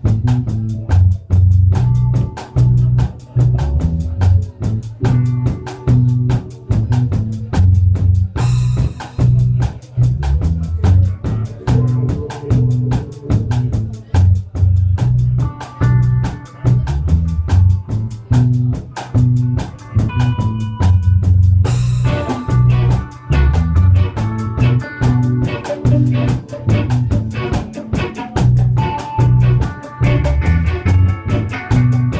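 Live rock band playing: electric guitar, bass guitar and drum kit, with a heavy bass line under a steady drumbeat. Cymbals crash about eight and twenty-two seconds in.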